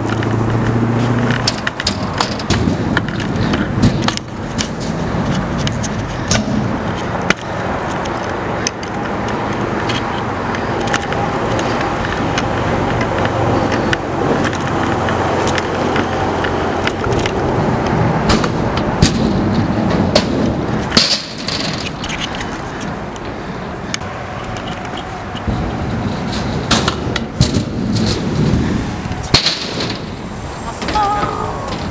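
Stunt scooter wheels rolling over concrete skatepark ramps, with many sharp clacks and knocks of the wheels and deck landing and striking the surface.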